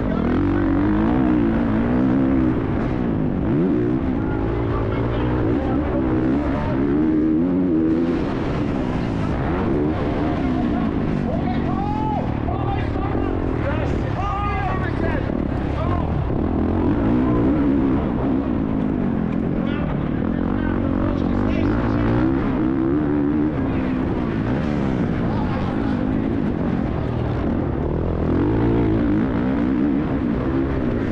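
MXGP 450cc four-stroke motocross bike's engine revving hard under race load, its pitch rising and falling over and over through throttle and gear changes, with rushing wind and dirt noise on a helmet-mounted camera.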